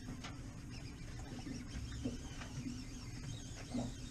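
Faint low rumble of wind and water on an open boat, with faint mechanical whirring and clicking from a fishing reel as a hooked fish is played.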